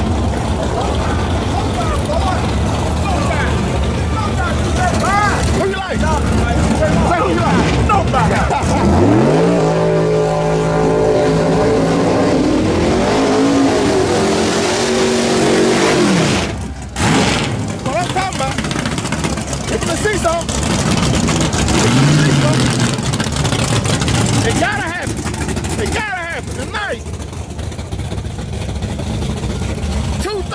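Drag-racing cars' engines revving hard: the pitch climbs steeply about nine seconds in and holds for several seconds before breaking off, with a second rise later. Spectators shout along the guardrail throughout.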